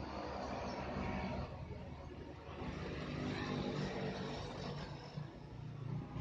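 A motor vehicle engine running close by, a steady low hum whose pitch shifts a little from about midway.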